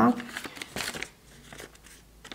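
Light, irregular rustling and crinkling of a brown paper sewing pattern and cotton fabric pieces being handled on a table, for about a second and a half.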